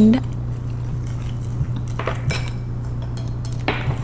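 Chopsticks stirring a thick fish-sauce mixture in a ceramic bowl, with a few light clicks and taps against the bowl.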